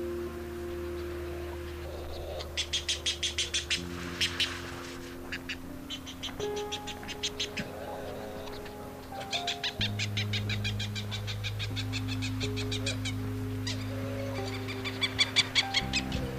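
Barau's petrels calling in several bursts of rapid short notes, about eight a second, over background music of sustained chords that shift a few times.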